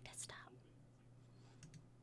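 Near silence with a steady low hum of room tone. About one and a half seconds in come two faint clicks of a computer mouse.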